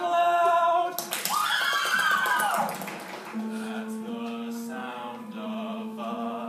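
Musical-theatre singing by a stage cast: a held sung note, then a voice swooping up and back down about a second in, and from about halfway a steady low note sustained under further singing.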